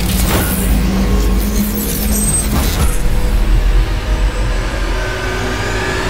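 A loud, steady low rumble with a faint held hum above it, broken by a few sharp hits near the start and about halfway through.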